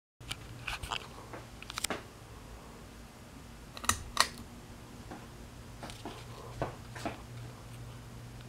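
Two sharp clicks about four seconds in as the pull-chain switch of a Harbor Breeze ceiling fan is pulled, then the fan's motor running with a low steady hum as the blades spin up. Lighter clicks and handling knocks come earlier and near the end.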